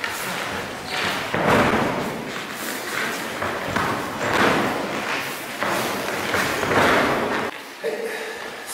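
A person being thrown again and again and landing in breakfalls on foam judo-style mats: several heavy thuds with rushes of cloth noise, roughly every second or two.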